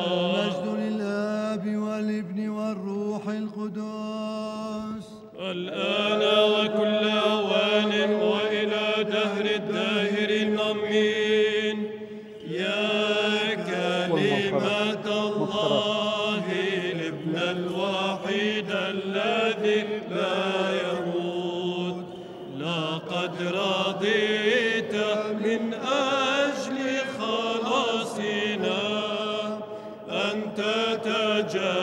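Byzantine liturgical chant sung in Arabic by a male cantor and a small mixed choir, the melody moving above a steady held low note. There are short breaks between phrases.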